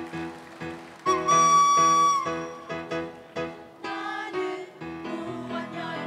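A handheld whistle blown once as a train whistle, one loud held high note lasting about a second, over a backing track with a steady chugging beat; from about four seconds in the music fills out with more instruments.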